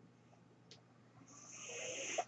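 Mechanical ventilator pushing a breath: a faint rush of air that builds up over the last second, after a moment of near silence.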